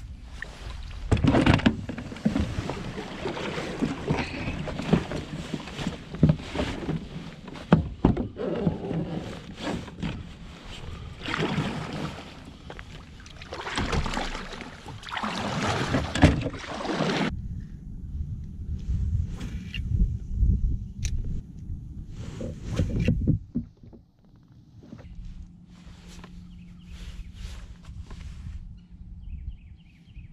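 A kayak paddle dipping and pulling through the water in repeated splashing strokes, with water sloshing around the hull. The strokes stop about two-thirds of the way through, leaving quieter lapping water.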